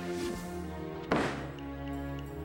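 Music with a steady pitched backing, cut by a single heavy thud a little after a second in as a wrestler lands on the ring.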